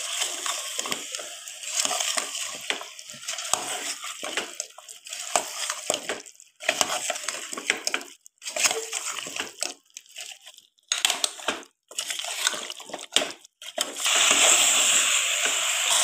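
A metal spoon stirring potato and carrot pieces through wet masala in a pressure cooker pot, with irregular scraping and sloshing strokes and the masala sizzling. The sound breaks off briefly several times in the second half, then turns into a steadier, louder sizzle near the end.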